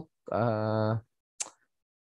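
A man's voice holding a drawn-out hesitation vowel for under a second, then a single short click about a second and a half in.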